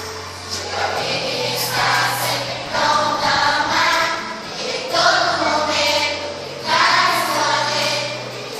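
A group of young children singing a song together as a choir, in phrases that swell and fall every second or two.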